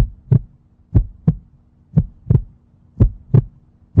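Heartbeat sound effect: paired lub-dub thumps, about one pair a second, over a faint steady low hum.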